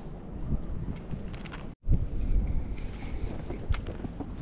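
Wind rumbling on the microphone, with a few faint clicks. The sound cuts out completely for an instant just under two seconds in, then resumes louder.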